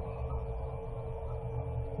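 Steady low electrical hum with a constant tone above it: the background hum of an interview-room recording.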